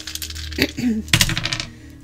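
Scrabble tiles tossed out onto a surface, a rapid clatter of many small hard tiles clicking against each other and the table, dying away near the end.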